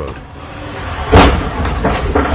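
Low vehicle rumble, with one short, loud burst of noise about a second in.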